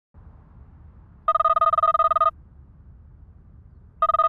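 Smartphone ringing with an incoming call: one fast-trilling electronic ring about a second long, starting just over a second in. The next ring begins at the very end, over a faint low background hum.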